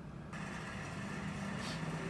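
A car engine idling steadily in a parking garage, with a low hum and a hiss, starting about a third of a second in.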